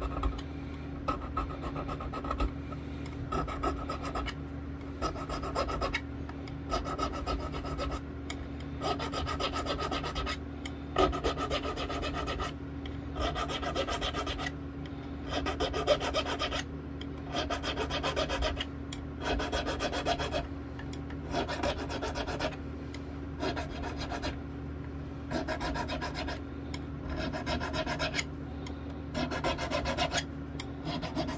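A file rasping across the sharp fret ends of a bass guitar neck in short strokes, roughly one a second, dressing off fret ends that stick out past the fingerboard edge. A steady low hum runs underneath.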